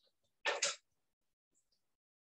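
A person's short breathy burst in two quick parts, about half a second in.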